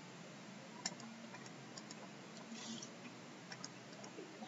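Quiet room tone with a handful of faint, sharp clicks, two of them close together near the end, and a brief soft hiss in the middle.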